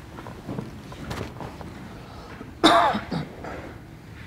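A brief, loud throat clearing close to the microphone, about two and a half seconds in, over low room murmur.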